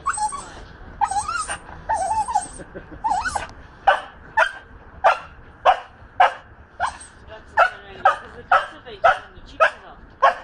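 An excited dog whining in short rising and falling calls, then breaking into a steady run of sharp yips, about two a second, from about four seconds in.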